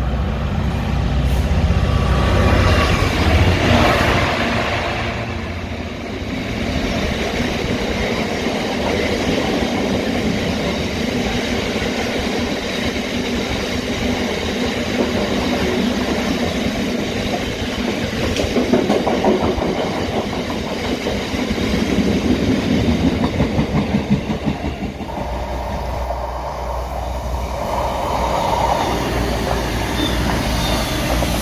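Freight train passing at speed: a Class 66 diesel locomotive's engine runs past loudly in the first few seconds, then a long rake of loaded freight wagons rolls by with steady wheel noise and a rapid rhythmic clatter over the rail joints, loudest a little past the middle. Near the end a steadier low rumble takes over.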